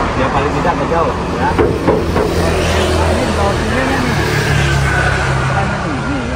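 Road traffic on the street alongside: vehicle engines running and passing, a steady low hum that shifts in pitch around the middle, with a faint whine near the end.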